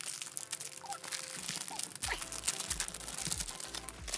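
Thin plastic wrapping crinkling and tearing as it is peeled off a booklet by hand: a dense run of small crackles.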